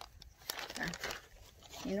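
Foil seed packets crinkling as they are handled, a few faint scattered crinkles and rustles.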